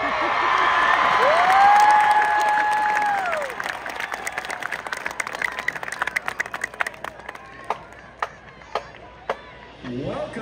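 Stadium crowd cheering and applauding, with one long held yell from a spectator about a second in; the applause then thins out to scattered single claps over the second half.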